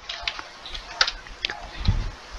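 A few scattered keystrokes on a computer keyboard: single sharp clicks spread unevenly, with a soft low thump near the end.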